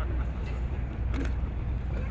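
A steady low rumble, with a single short spoken word about a second in.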